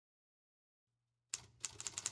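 Dead silence, then about a second and a half in, rapid typing starts: sharp keystroke clicks, about five or six a second.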